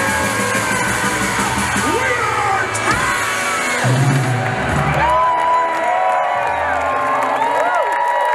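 Live rock band of electric bass, two electric guitars and drums playing the loud close of a song, with pitches gliding up and down over a sustained bass. Near the end the low bass drops away while the crowd whoops and cheers.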